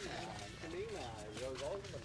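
Quiet background talking: a person's voice speaking softly throughout, with no other clear sound standing out.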